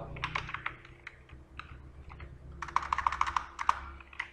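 Computer keyboard typing: a few keystrokes in the first second, a pause, then a quick run of keystrokes between about two and a half and four seconds in.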